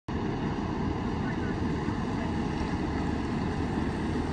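Steady low rumble of slow-moving emergency vehicles, a Chevrolet Tahoe chief's SUV leading a fire engine, with wind on the microphone.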